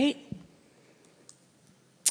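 A soft knock and a few faint clicks in a quiet hall, the kind made by handling a microphone or pressing a handheld presentation remote.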